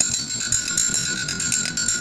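Steel pipe coupon ringing like a bell under rapid metal-on-metal strikes and scraping from a hand tool worked against the welded joint, the ring starting suddenly and stopping after about two seconds.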